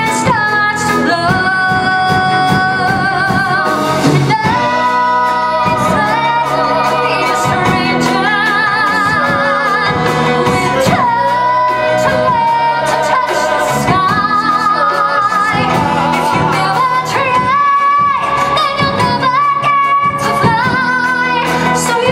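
Musical-theatre singers performing live, holding long notes with vibrato in harmony over instrumental accompaniment.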